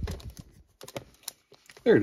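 Plastic CD jewel cases clacking against one another as a hand flips through a packed row of them: a run of irregular sharp clicks, thickest at the start and thinning out.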